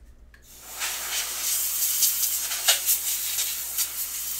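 Packaging being handled at the table: a loud, steady hissing rustle, scattered with sharp crackles, that starts about half a second in.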